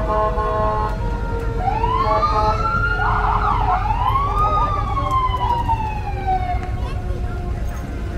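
Emergency-vehicle siren sounding: a wail rises about a second and a half in, breaks into a brief fast yelp around three seconds, then rises again and falls slowly away, fading by about six and a half seconds. A steady low rumble of vehicle engines runs underneath.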